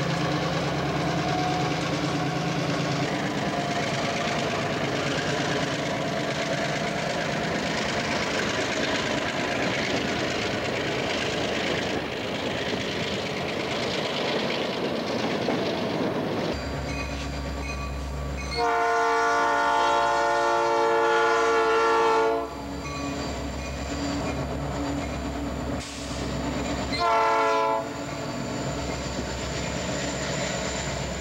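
Union Pacific freight locomotive and train rumbling past with wheel and engine noise. After a cut, a locomotive air horn sounds one long blast of about four seconds, which is the loudest sound, and a few seconds later a short blast, over the low rumble of diesel engines.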